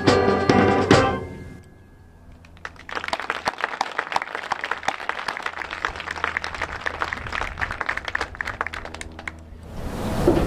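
School concert band's closing chords with sharp percussion hits, cut off about a second in and ringing away. Then the audience applauds for about seven seconds, and the applause stops abruptly near the end.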